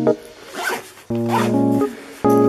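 Backpack zipper being pulled in two quick strokes, about half a second and about a second and a half in, over background music with soft keyboard chords.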